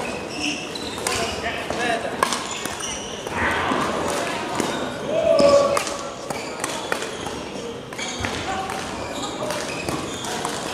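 Echoing sports-hall ambience: indistinct voices talking across a large hall, with scattered sharp clicks and knocks. One voice stands out louder about five seconds in.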